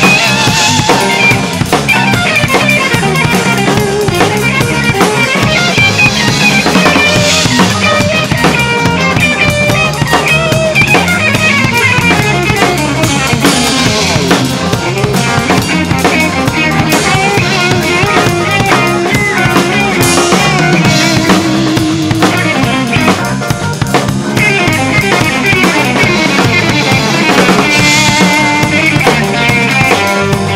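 Acoustic drum kit played with sticks, with kick, snare and several cymbal crashes, over a jazz-rock fusion recording led by violin with bass, guitar and piano.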